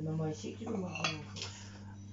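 Plates being handled and knocking together, with one sharp clink about a second in.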